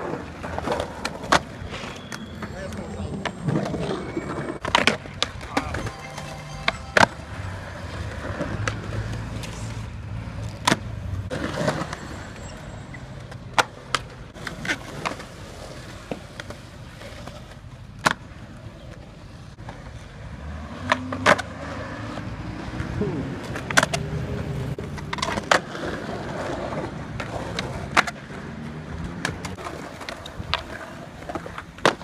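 Skateboard on smooth concrete: the wheels roll steadily, broken by a dozen or so sharp cracks as the tail pops and the board lands during flatground tricks.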